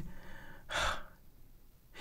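A man drawing one quick breath in through his mouth, close to the microphone, a little over half a second in.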